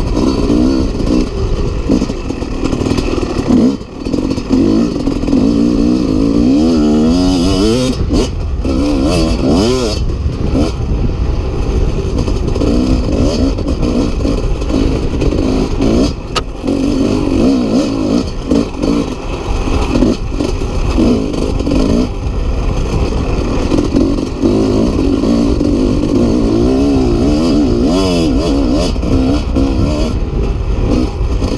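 1996 Kawasaki KX250's single-cylinder two-stroke engine, breathing through an FMF Gnarly expansion pipe, revving up and down over and over as the bike accelerates, shifts and backs off on a dirt track.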